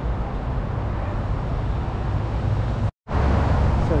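Steady low rumble of road traffic, broken by a brief gap of silence about three seconds in.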